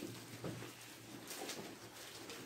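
Pages of a Bible being leafed through by hand, faint and soft, with a bird cooing quietly in the background.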